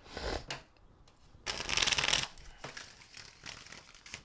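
A deck of tarot cards being shuffled by hand: short papery slides and taps, with a louder rapid flutter of cards about a second and a half in that lasts under a second.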